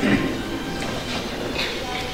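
Audience applause in a hall, slowly dying down.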